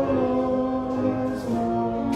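A group of voices singing a hymn together, held notes moving from pitch to pitch with the occasional sung hiss of a consonant.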